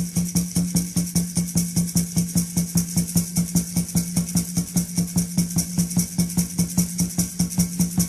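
Otoe peyote song accompaniment: a water drum and gourd rattle beating fast and evenly, about four to five strokes a second, over a steady low drum tone, with no singing in this stretch.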